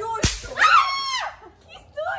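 A single sharp smack, then a girl's high-pitched excited cry that falls in pitch and dies away about a second later.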